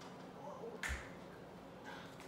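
One sharp snap, made by hands, about a second in, over quiet room noise.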